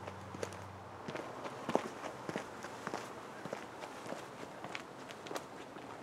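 Footsteps on a dry dirt trail strewn with leaves and twigs, an irregular run of light crunches starting about a second in.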